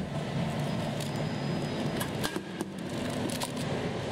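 Snack vending machine running with a steady low hum, with a few short clicks and knocks a couple of seconds in as it dispenses a snack.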